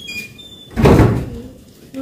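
A single thump about three quarters of a second in, sudden and then fading over about half a second.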